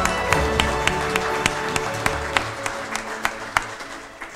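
A small audience applauding, with distinct claps about three or four a second, over background instrumental music. Both grow steadily fainter.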